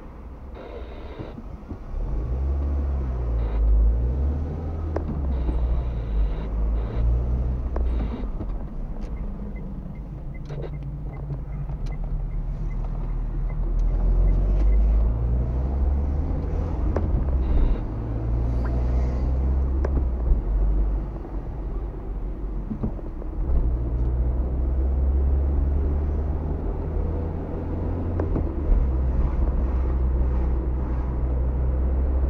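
Car engine and road rumble heard from inside the cabin. About two seconds in the car pulls away from a stop, and the engine note then rises and falls repeatedly as it accelerates through the gears and cruises.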